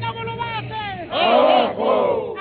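A protest crowd shouting a chant together, loudest in one long shout from a little past a second in.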